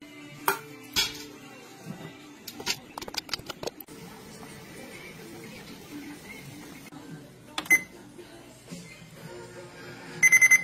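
Glass canning jars clinking and knocking against a stainless steel canning pot as they are set into the water bath. A quick run of clinks comes around three seconds in and a single loud one near the end, over soft background music.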